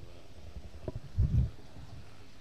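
A low, muffled thump sounds a little over a second in, just after a faint click, over a steady low hum.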